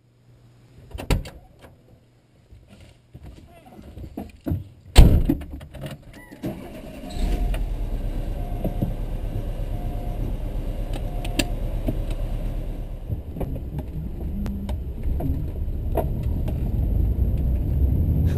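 Clicks and jangling keys, then a hard slam about five seconds in, the loudest sound. A VW Vanagon Westfalia's engine then starts and runs with a steady low rumble inside the cabin as the van drives off.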